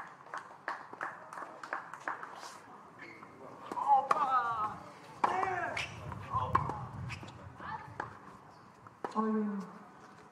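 Tennis ball bounced repeatedly on a hard court before a serve, a quick even run of about three bounces a second, followed by scattered single ball strikes and voices.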